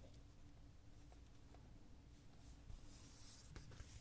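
Near silence: faint rustling of a comic book being handled, with a couple of light ticks near the end, over a low steady hum.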